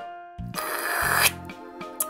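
A single pen stroke scratching across paper for under a second, crossing an item off a written list, over soft background music.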